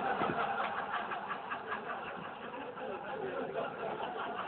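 A club audience laughing loudly at a joke, a dense mass of crowd laughter that eases a little after about two seconds.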